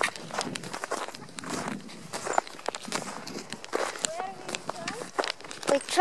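Footsteps crunching on packed snow, an uneven run of short steps. Faint voices can be heard now and then in the background.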